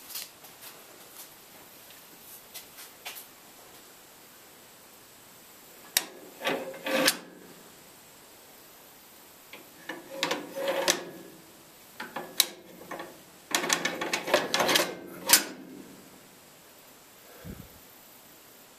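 Belt pulley shift lever and linkage on an Allis-Chalmers tractor being worked by hand, with the engine off: bouts of metal clunking and scraping about six seconds in, again around ten seconds, and a longer bout near the end, with a few sharp clicks between.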